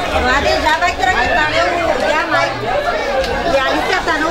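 Several people chatting at once, close by, with overlapping voices.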